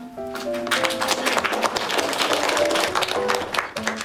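A classroom of students clapping, starting just under a second in and fading out near the end, over background music with a simple melody of held notes.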